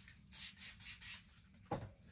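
Quick, faint rubbing strokes against a plastic tub, about five in under a second, followed by one short knock near the end.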